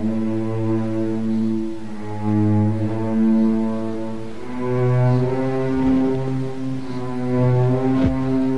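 Orchestral strings, with cellos and double basses to the fore, bowing slow, sustained chords that swell and fade. The chord changes about halfway through.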